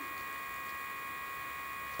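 Steady background whine made of several high, unchanging tones over a faint hiss.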